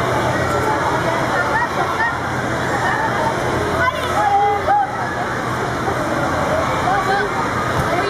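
Steady babble of many children's voices, with scattered high shouts and squeals over the general chatter.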